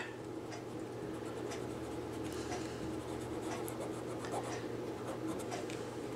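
Raw Sienna Crayola wax crayon rubbing across fabric in many short, quick shading strokes, a soft continuous scratching.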